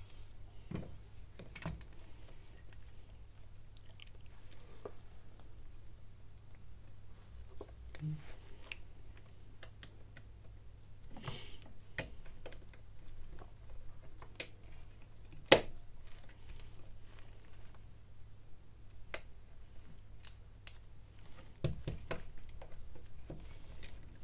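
Gloved hands handling small phone parts on a silicone repair mat: scattered light clicks and taps as the mainboard is set and pressed into the phone's frame, with one sharp click about two-thirds of the way through. A faint steady low hum runs underneath.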